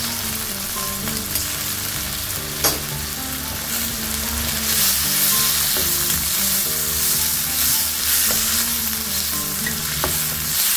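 Chopped onion and green capsicum sizzling with sauces in a hot wok, stirred and scraped with a wooden spatula. There is one sharp knock a few seconds in, and the sizzling grows louder from about halfway as the vegetables are tossed.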